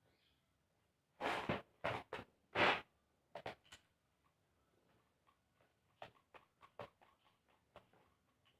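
Homemade cardboard spinning tops launched onto a paper-covered arena: three short rasping scrapes in the first few seconds, then scattered light clicks and knocks as the tops spin and touch.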